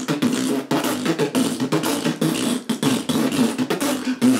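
Beatboxing: rapid mouth percussion with a low buzzing lip sound, performed as a comic imitation of a fart.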